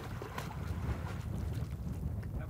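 Wind rumbling on the microphone, with faint splashing of water as a horse wades belly-deep in a creek.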